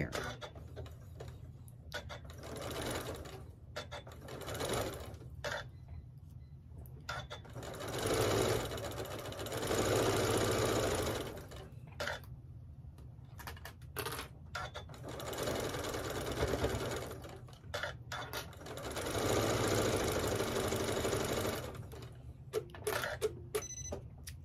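Sewing machine stitching a straight seam through pieced cotton quilt fabric. It runs in several stop-start bursts of one to three seconds each, with short pauses between them.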